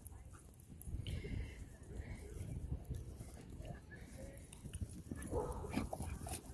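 Two dogs, a Siberian husky and a red short-coated dog, playing together, with faint whines and yips at intervals. The calls pick up near the end.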